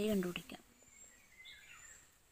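A woman's voice finishes a word, then near silence with only faint light sounds as a ballpoint pen starts writing on paper.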